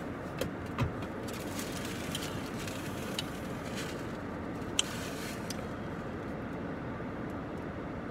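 Steady hum of a car cabin with the engine running. A few light clicks and knocks come from the drink can, glass cup and foam takeout box being handled, the sharpest about five seconds in.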